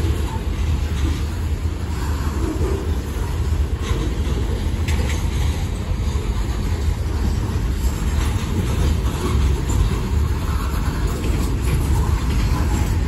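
Covered hopper cars of a long freight train rolling past, their wheels running on the rails with a steady low rumble and a few sharp clicks.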